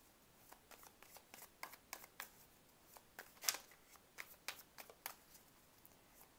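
A tarot deck being shuffled by hand: faint, irregular clicks and flicks of cards against each other, with a louder snap about three and a half seconds in.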